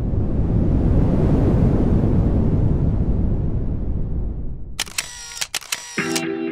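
Intro sound effect: a deep, loud rushing swell of noise that fades away, then a quick series of camera shutter clicks near the end.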